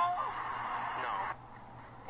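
A woman and police officers talking, including a short "no", picked up by a police body camera. Steady noise runs under the voices and drops away in the last half second.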